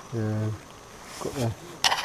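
A man's voice making two short murmured sounds, then a brief hissing rush near the end.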